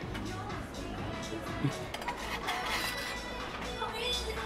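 Background music with indistinct voices and a few light clinks of dishes on a table.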